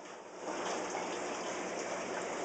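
Water running steadily, starting about half a second in.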